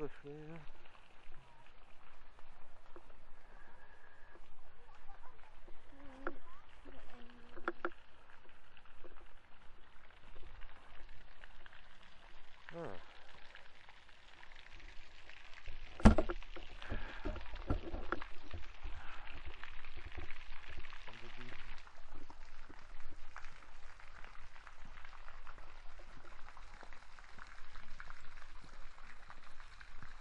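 Steady outdoor background hiss with faint, indistinct voices now and then, and a single sharp knock about sixteen seconds in.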